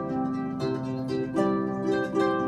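Concert harp played solo: plucked notes and chords ringing over one another, with fresh plucks a little over half a second in, near the middle and near the end.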